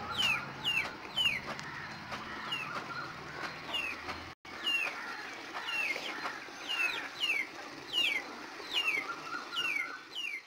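A bird calling steadily with short, high, downward-sliding peeps, about two a second. The sound cuts out for a moment about halfway through.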